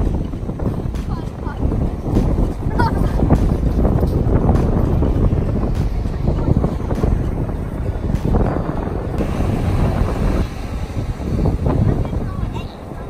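Wind buffeting the microphone over ocean surf breaking and washing up a sandy beach, a steady heavy rumble that swells and eases.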